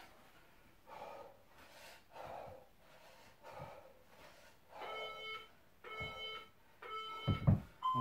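Workout interval timer beeping a countdown: three short beeps about a second apart, then a longer beep at a different pitch near the end, signalling the end of the 30-second work interval. A low thump comes just before the long beep.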